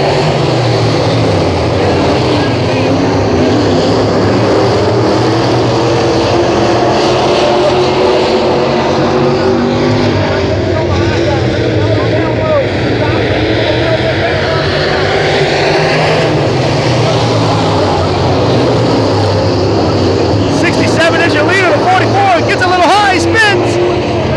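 A pack of limited late model dirt-track race cars running at speed around the oval, their engine notes rising and falling as they go around. Voices come up over the engines near the end.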